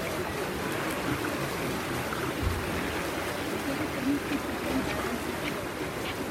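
Steady splashing of several swimmers racing front crawl in an indoor pool.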